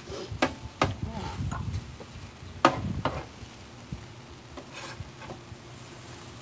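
Metal spatula scraping and clacking on the steel top of a Blackstone flat top griddle as it stirs vegetables, over a light sizzle. It gives a few sharp clacks in the first three seconds, the loudest near three seconds in, then grows quieter.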